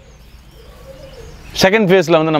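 Faint bird calls in the background during a pause, then a man's voice starts speaking loudly about one and a half seconds in.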